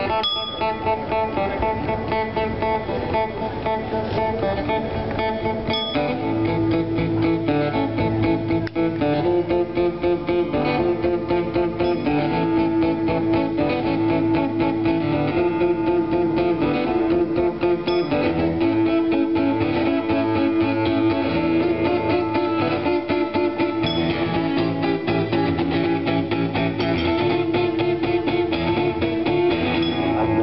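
Acoustic guitar strummed in a fast, steady rhythm, an instrumental passage that gets louder about six seconds in.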